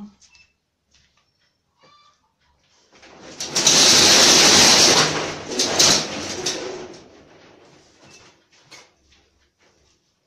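A door being slid shut: a long scraping rush that starts about three seconds in, is loudest around four to five seconds in, and dies away by about seven seconds.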